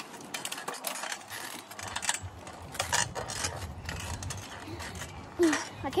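Bicycle rolling along a trail: irregular clicks and rattles, with a low rumble from the tyres that sets in about two seconds in.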